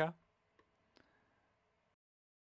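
Near silence with two faint, short clicks, about half a second and one second in.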